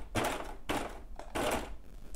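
Baby Lock serger run in three short bursts, a few stitches at a time, starting the long-stitch seam that attaches swimwear elastic to the fabric.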